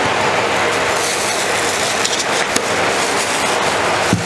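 Steady, loud rushing noise of running machinery, with a few light clicks around the middle.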